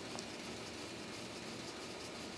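Steady low background noise with no distinct events: room tone.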